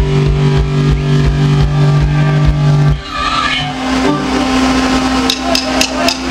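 Live ska band playing: a loud held chord for about three seconds, then it breaks off to a quieter single held note, with sharp drum strikes near the end.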